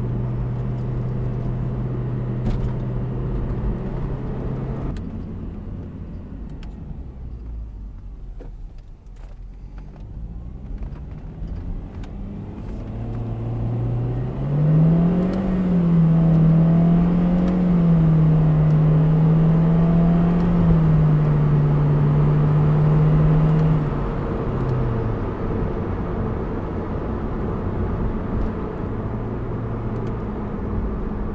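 Honda CR-Z's 1.5-litre four-cylinder engine heard from inside the cabin while driving in sport mode, over tyre and road noise. The engine note holds steady, falls away for several seconds, then climbs about halfway through to a louder, higher pitch held with a few small steps, before dropping back near the end.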